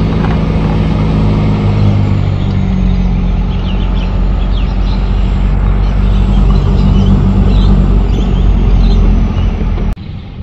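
Steady engine and road noise heard inside the cab of a Nissan Navara D22 ute driving along, cutting off suddenly at the very end.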